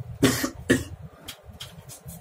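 A person coughing twice in quick succession, the first cough longer, over the low running hum of an elevator car moving up.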